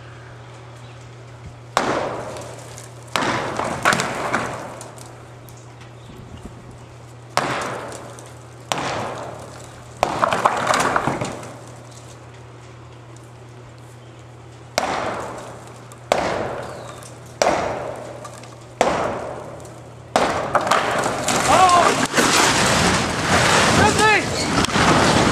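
Sledgehammer blows on a silo wall: about ten heavy strikes, in groups of two or three, each ringing out after the hit. About twenty seconds in, a continuous loud crashing rumble begins as the silo starts to come down.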